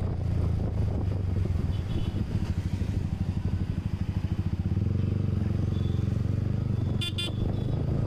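Motorcycle engine running while riding through city traffic, its exhaust pulsing audibly in the middle. Two quick vehicle horn toots about seven seconds in, and a shorter one about two seconds in.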